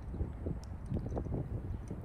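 Low, steady outdoor rumble of wind on the microphone, with a few faint ticks.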